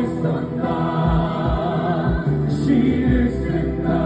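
A man singing a musical-theatre song live into a handheld microphone over amplified backing music, with other voices in the mix, heard through the venue's sound system.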